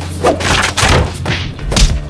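A run of dull thuds, about four, as a padded outdoor cushion is slammed against a wall and wicker patio chairs; the loudest comes near the end.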